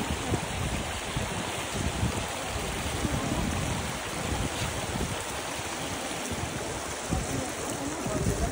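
Steady rushing of shallow water flowing over travertine terraces, with uneven low gusts of wind on the microphone.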